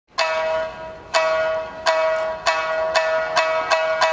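A plucked string instrument repeats one high note about seven times, each note ringing and fading, with the notes coming closer and closer together. It is played in a Japanese traditional style.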